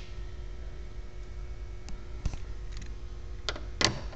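Low steady hum with a few faint clicks, then two sharper metallic clicks near the end as a socket wrench is set onto the intake cover bolts.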